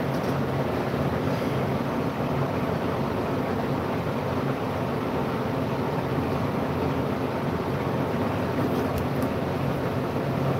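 Steady machine hum with an even rushing noise, unchanging throughout, with a faint click or two near the end.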